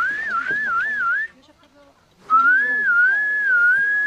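A person whistling a short warbling phrase, then after a pause of about a second a second, smoother phrase that rises and falls. It is the couple's whistle, the signal between husband and wife that stands for their love.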